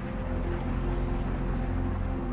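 Steady low drone made of several held tones, under a soft rush of wind-like air noise: a sustained soundtrack bed with an air-turbulence sound effect.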